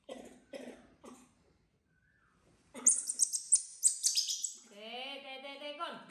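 A baby macaque squealing: a burst of shrill, very high squeaks and chirps about halfway through, the loudest sound here. It is followed by a longer, lower drawn-out cry near the end.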